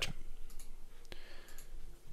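A few isolated computer mouse clicks, about half a second apart, with quiet room tone between them.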